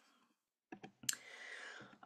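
A few quick, faint computer clicks as a presentation slide is advanced, followed by a faint hiss.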